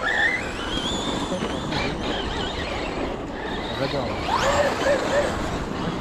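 Several battery-electric RC cars driven hard on dirt: their brushless motors whine, the pitch rising and falling as they accelerate and let off, with a rising whine near the start and another about four seconds in, over the hiss of tyres on loose gravel.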